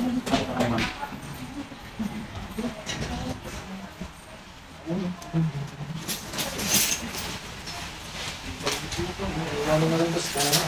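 Cloth rustling and flapping as two people shake out and pull on surgical scrubs, the busiest rustling a little past the middle, with short low murmured voices in between.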